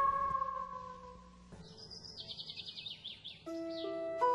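Background music fading out, then birds chirping in quick repeated high calls, with a new music cue of held notes coming in about three and a half seconds in.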